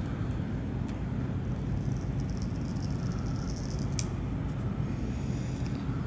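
Steady low background rumble, with faint rustling and a couple of light clicks as the paper backing is peeled off the laminate shield of a plastic ID wristband.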